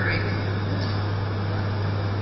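Steady background hiss with a constant low hum, and no distinct sound event.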